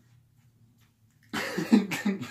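A man laughing in a run of short, breathy bursts that starts about halfway in, after a quiet pause.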